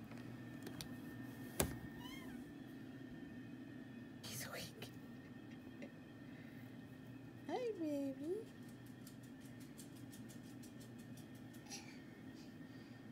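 A sharp click about one and a half seconds in, a brief whisper a few seconds later, and past the middle a short wavering vocal cry that falls and then rises in pitch, over a low steady room hum.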